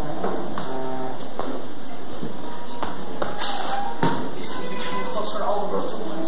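Scattered light taps and footfalls of actors moving on a stage, over faint voices and a few held musical tones, with a steady hiss underneath.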